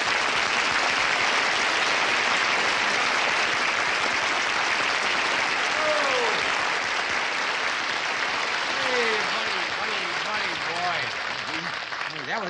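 Studio audience applauding steadily, with a few voices calling out over it in the second half.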